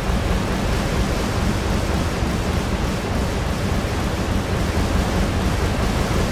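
Steady, loud rushing noise like static, with a low rumble beneath it: an electric-crackle sound effect for an animated lightning title.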